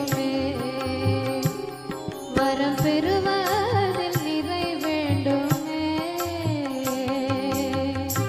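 Tamil devotional song: a melody line gliding up and down in pitch over a steady low drum beat.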